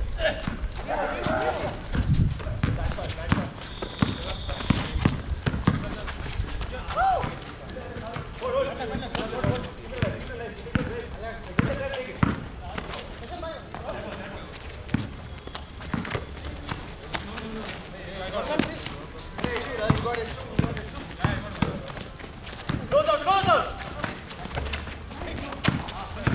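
Basketball bouncing on a concrete court in a pickup game, a string of short knocks from dribbling and footwork, with players calling out to each other throughout.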